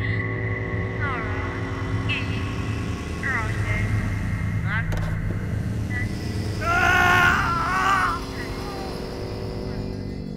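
Horror-trailer sound design: a sustained low drone with quick eerie sweeping tones over it, and a louder wailing, voice-like cry about seven seconds in.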